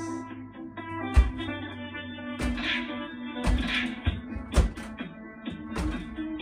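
Gloved punches thudding on the foam pads of a wall-mounted music boxing machine, about six hits at an uneven pace, the loudest about a second in, over music with guitar.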